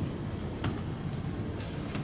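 Steady low rumble of room noise with one sharp click about two-thirds of a second in, from the laptop being operated.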